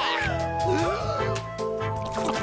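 Cartoon background music with a steady beat, over which a cat-like meow cry slides down in pitch at the start, followed by a second, wavering meow just before a second in.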